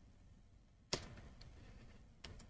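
Near silence broken by one short computer click about a second in.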